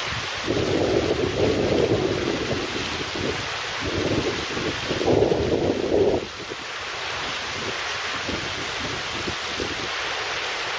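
Shallow river water rushing steadily over a flat, rocky bed. Wind gusts buffet the microphone with a louder, uneven rumble from about half a second in, which stops abruptly about six seconds in.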